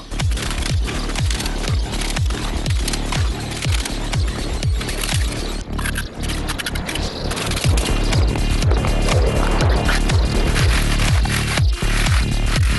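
Background electronic music with a steady kick-drum beat, about two beats a second.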